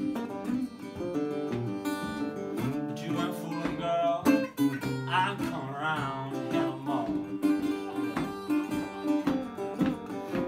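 Acoustic blues played on a resonator guitar with a harmonica, with wavering, bent notes about halfway through.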